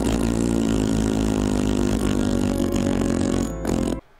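Loud, sustained, buzzing low drone with many steady overtones, an edited-in sting, cutting off suddenly at the end.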